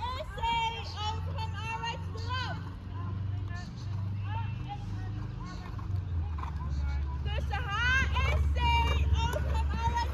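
Faint voices talking in the background over a steady low rumble.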